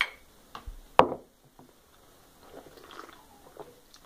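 Glass tumblers knocking: a sharp clink at the start and a louder one about a second in. Faint small sounds follow in the second half, likely sipping and swallowing of the punch.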